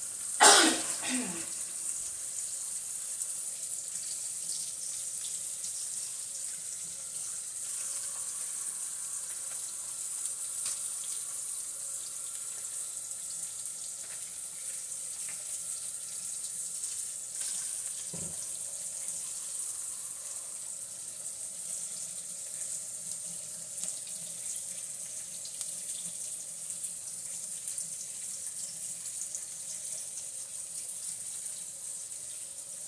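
Bacon sizzling in a frying pan, with shredded hash browns frying in a second pan: a steady high hiss with small pops. About half a second in, a brief laugh-like voice sound falls in pitch, and a soft knock comes about eighteen seconds in.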